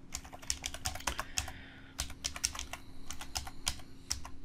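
Typing on a computer keyboard: quick, irregular keystrokes with a short pause about halfway through, over a faint steady hum.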